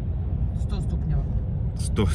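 Steady low rumble of a car in motion, heard from inside the cabin.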